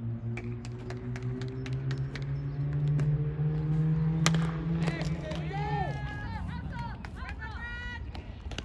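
A baseball bat hits a pitched ball once, a sharp crack about four seconds in, putting the ball in play. Spectators then shout and yell as the play develops.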